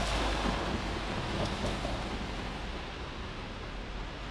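Steady hiss of traffic on rain-wet city streets, tyres swishing on wet asphalt, with wind rumbling on the microphone. The noise eases a little after about two and a half seconds.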